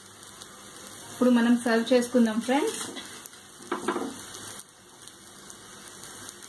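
An omelette frying on a hot tawa, a faint, steady sizzle.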